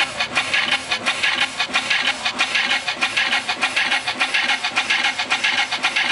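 Hardstyle track played loud over a festival sound system: a steady, fast kick drum, about three beats a second, under dense, grinding synths.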